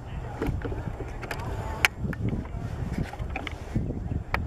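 Wind buffeting the camera microphone in a low rumble, with distant voices from players and spectators. One sharp knock about two seconds in.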